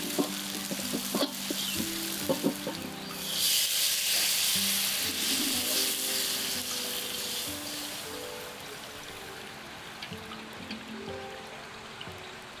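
A metal spatula scrapes and taps against an aluminium wok as garlic and shallots fry. About three seconds in, coconut milk poured into the hot oil gives a loud hiss, which fades over the next few seconds to a quieter sizzle.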